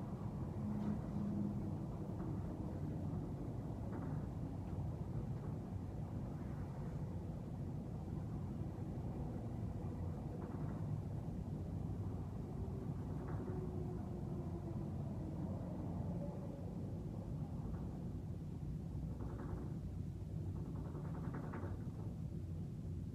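Steady low background rumble, room tone, with a few faint brief scuffs scattered through it.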